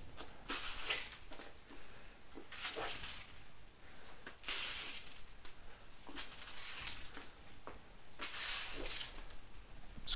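Broom bristles brushing across the floor in a handful of soft, irregular swishes, sweeping a scrunched-up paper ball back and forth.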